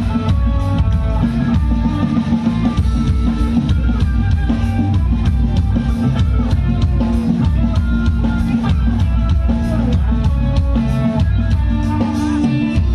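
Live rock-pop band playing an instrumental passage with a steady beat: drum kit, electric guitars and keyboards.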